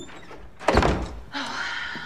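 A single heavy thump with a deep low end, about two-thirds of a second in, fading within half a second.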